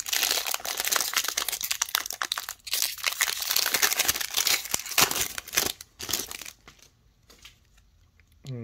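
Trading-card pack wrapper being torn open and crinkled by hand: dense crackling that stops about a second and a half before the end.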